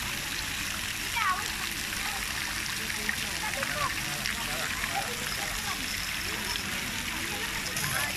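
Steady hiss of water spraying from splash-pad jets onto a wet play surface, with children's voices and calls mixed in.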